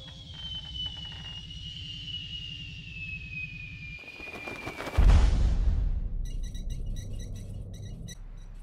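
Cartoon sound effects from an animated film soundtrack: a long falling whistle that glides steadily down in pitch for about five seconds, cut off by a heavy boom, then rumbling and a quick run of high electronic blips.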